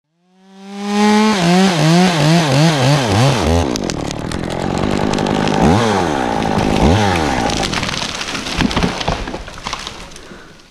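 Stihl 201T top-handle chainsaw revving in quick pulses, then cutting into a dead grand fir trunk, its pitch dipping twice as it bogs under load and recovers. Near the end, sharp cracks of wood as the cut-off dead top breaks away.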